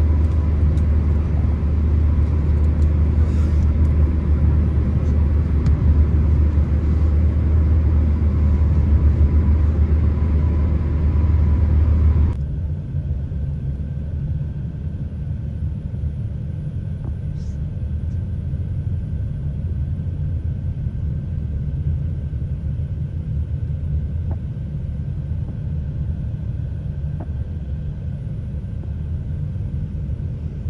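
A vehicle's steady, loud low rumble. About twelve seconds in it drops abruptly to a quieter, thinner rumble with a faint steady tone.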